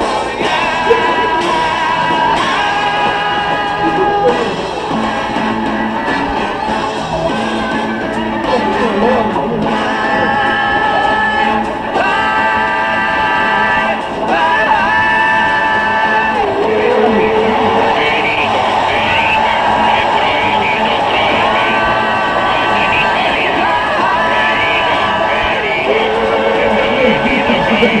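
Psychedelic rock band and orchestra playing live, with group singing, long held notes and wavering sung lines.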